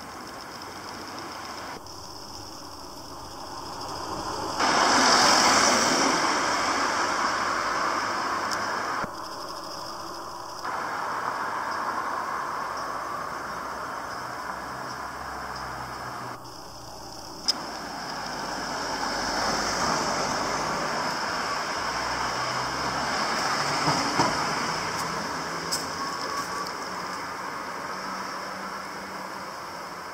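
Street traffic noise, with a vehicle passing close about five seconds in and another slower swell of passing traffic later on, plus a few sharp clicks.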